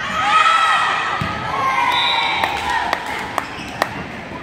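A girls' volleyball rally in a gymnasium: high voices calling out from the court and sidelines, with a few sharp slaps of the ball being struck in the last two seconds.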